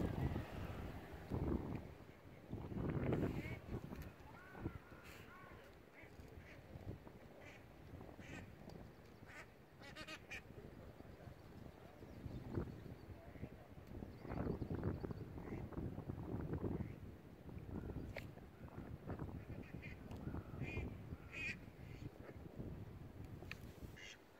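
Gusty wind buffeting the microphone, rising and falling in bursts, with a few short calls heard over it.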